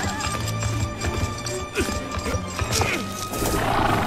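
A horse galloping, its hooves clattering in quick repeated knocks, over background music.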